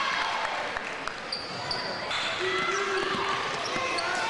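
A basketball bouncing on a gym's hardwood floor during play, a few short knocks, over the chatter and shouts of players and spectators in an echoing gymnasium.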